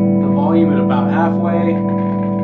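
Electric guitar chord ringing out through the guitar channel of a 1960s Gregory tube amp with a single 15-inch speaker, sustaining and slowly fading, with a man talking over it.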